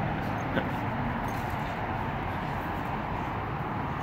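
Steady outdoor background noise, an even hum and hiss, with one faint click about half a second in.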